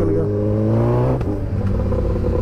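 Suzuki Hayabusa's inline-four engine accelerating, its pitch rising for about a second before dropping suddenly as the revs fall, over a steady low rumble of wind and road.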